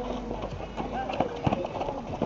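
Basketball bouncing and players running on an asphalt court: several sharp, irregular thuds, with voices in the background.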